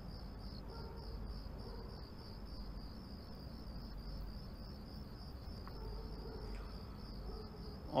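Crickets chirping in a steady, even rhythm, faint over a low background hum.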